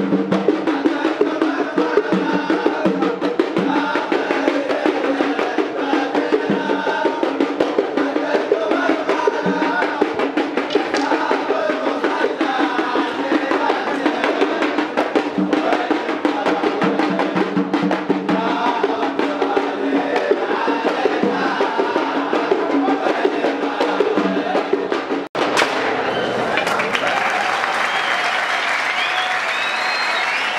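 Hadhrami folk dance music: a double-headed drum and struck metal plates beat a fast rhythm under a wavering melody over a steady drone. At about 25 seconds it cuts to applause.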